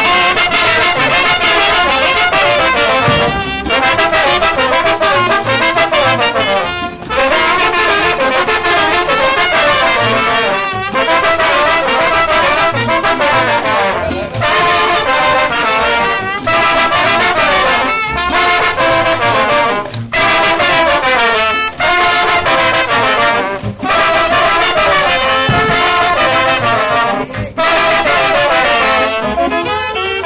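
A small live wind band of saxophones and trumpets playing a lively dance tune, loud and continuous, in phrases with short breaks every few seconds.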